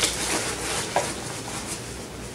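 Rustling of a nylon backpack lid pocket and a plastic packet of baby wipes as the packet is stuffed into it, with a brief squeak about a second in.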